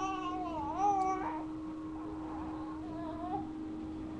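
Baby making a drawn-out, whiny cry-like call that wavers in pitch over the first second or so, then a fainter, shorter one about three seconds in. A steady hum runs underneath.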